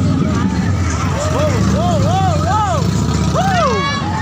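Busy city street: a steady low traffic rumble with voices from the crowd, people talking and calling out close by, one loud call near the end.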